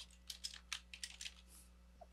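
Computer keyboard typing a file name: a run of faint, quick keystroke clicks that thin out near the end.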